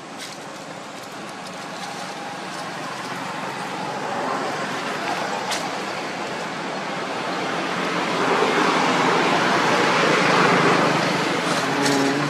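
A steady rushing noise from a road vehicle that grows louder over several seconds as it draws near, loudest near the end, with a single sharp click about five and a half seconds in.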